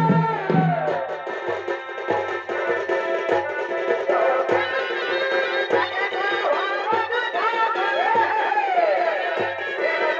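Purulia chhau dance accompaniment: a wavering, gliding melody over regular drum beats, a little under two a second.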